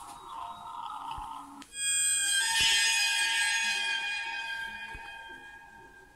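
A soft hissing sound, then a loud ringing musical tone that comes in suddenly about two seconds in and slowly dies away over about three seconds.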